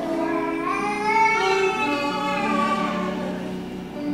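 Hymn music: a keyboard sustaining held chords while a voice sings a line over them, rising and then falling away.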